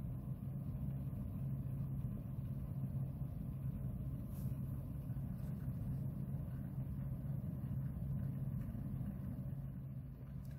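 A steady low hum, like a small motor or machine running, with no distinct events.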